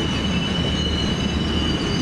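Freight train of covered hopper cars rolling past, a steady low rumble with a thin, steady high-pitched wheel squeal over it.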